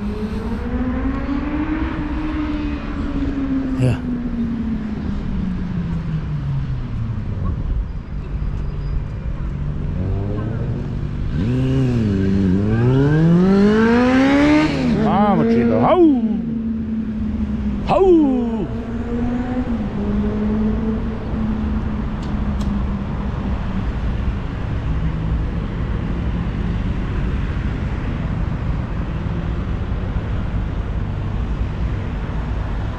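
City street traffic: motor vehicle engines rising and falling slowly in pitch as they accelerate and pass, over a steady low rumble. There is one held steady engine tone for several seconds and two brief sharp sounds about two seconds apart past the middle.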